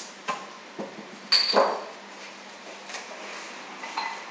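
Glass beer bottle being opened: a few small clicks of the opener on the crown cap, then a short pop and hiss of escaping gas as the cap comes off about a second and a half in. Light glass clinks follow near the end, as the bottle meets the glass.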